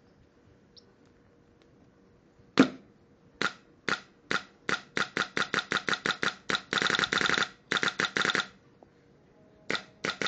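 Smart Parts Shocker SFT electropneumatic paintball marker firing: one loud shot about two and a half seconds in, then shots that speed up from about two a second to a quick string, ending in two rapid bursts where the shots nearly run together.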